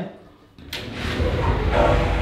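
A sharp click, then a low rolling rumble for about a second and a half: a glass shower-cabin sliding door being pushed open along its track.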